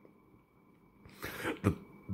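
A man clears his throat in a couple of short, rough coughs a little past halfway in, after a second of near silence.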